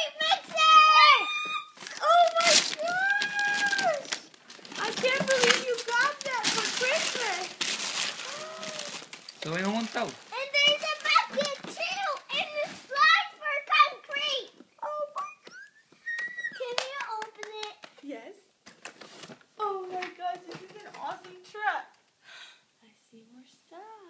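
Young children's high-pitched voices, excited chatter and calls without clear words. Between them come stretches of rustling and crinkling as a toy is handled in its box and packaging.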